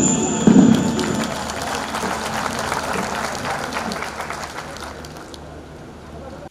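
Audience applauding, the clapping fading away gradually over several seconds. A couple of deep drum strokes close off the music in the first second.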